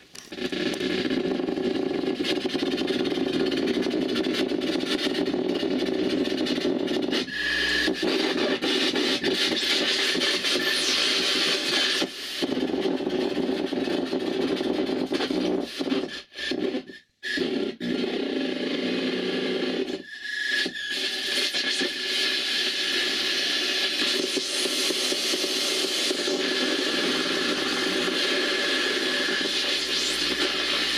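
Harsh noise music from a table of effects pedals and a mixer: a dense, grainy wall of static that starts suddenly, with a thin whistling tone coming and going over it. It cuts out abruptly a few times around the middle before carrying on.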